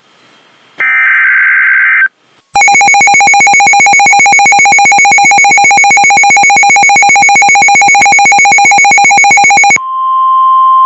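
A Midland weather alert radio receiving a NOAA Weather Radio alert: a burst of warbling SAME digital header data about a second in, lasting about a second. Then the radio's own alarm sounds, a loud, rapidly pulsed beeping, several beeps a second, that stops just before the steady alert tone of the broadcast begins at the very end.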